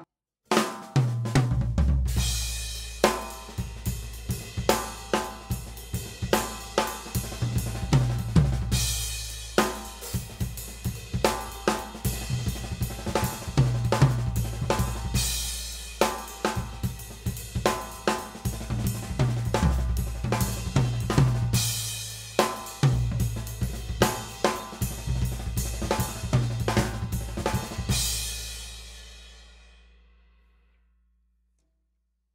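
Acoustic drum kit played in a ternary, triplet feel: a groove on bass drum, snare and cymbals with a nine-stroke, nearly linear fill worked in, and cymbal crashes marking the phrases every several seconds. The playing stops about two seconds before the end and the last cymbal rings out and fades.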